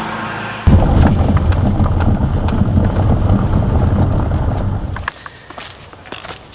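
A loud, low rumbling noise starting abruptly under a second in, running about four seconds and cutting off suddenly about five seconds in, followed by quieter outdoor noise with a few small clicks.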